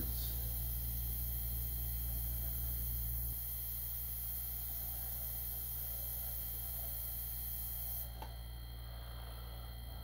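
Airbrush spraying paint with a steady high hiss that stops about eight seconds in, followed by a small click. A steady low hum runs underneath.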